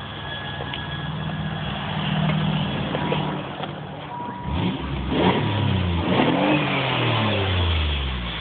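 Chrysler LeBaron's 3-litre V6 running with Seafoam carbon cleaner in it: a steady idle, then revved up and down several times from about halfway through.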